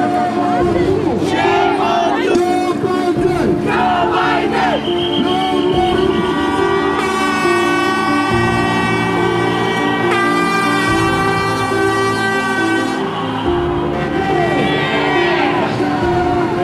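A man's voice amplified through a handheld microphone, reading a statement in a language the recogniser did not pick up, over music with steady held low notes. From about five seconds in to about thirteen seconds a long, steady, high tone sounds over the speech, shifting pitch twice.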